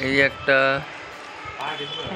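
A person's voice: two short, loud syllables right at the start, then fainter speech near the end.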